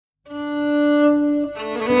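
Norwegian folk dance band with fiddle opening a waltz: a single held note swells in just after the start, and about a second and a half in it gives way to several notes as the tune gets under way.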